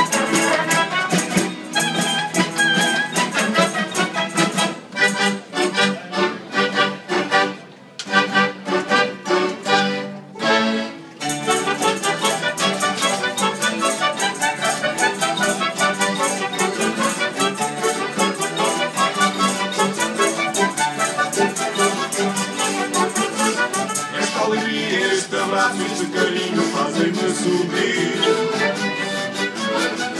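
A live band of acoustic guitars and other plucked string instruments playing an instrumental passage. The music breaks into short strokes with brief pauses about five to eleven seconds in, then settles into a steady, fast strum.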